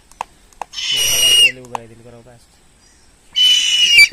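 A large owl gives two loud, shrill screeches, each under a second long, with a steady high pitch that slides down at the end.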